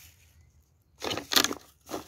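Thin plastic bottle crinkling and rustling for about half a second, starting about a second in, as a gloved hand pushes down into the kitchen scraps packed inside it.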